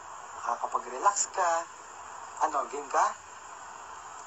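Only speech: two short spoken phrases, the first about half a second in and the second about two and a half seconds in, over a steady faint hiss.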